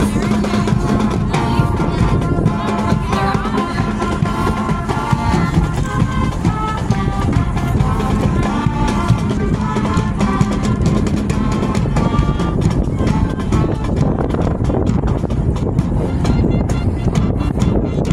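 High school marching band playing as it marches past: brass and woodwinds with a steady drum beat underneath. Near the end the held wind notes thin out and the percussion carries on.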